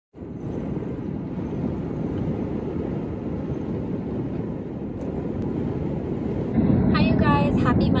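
Steady low rumble of a car's road and engine noise heard inside the cabin while driving. A voice starts near the end.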